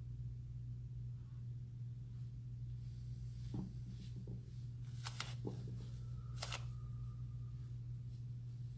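Steady low room hum, with a few short soft rustles of cloth and bodies shifting on floor mats in the second half.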